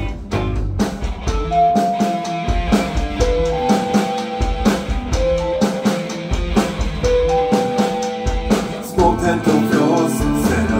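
Live rock band playing an instrumental passage: drum kit, bass guitar, electric guitar and keyboard, with a lead melody of long held notes over a steady beat. Singing comes back in at the very end.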